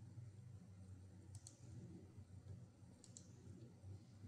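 Near silence: a low steady room hum with two faint clicks, about a second and a half in and again about three seconds in.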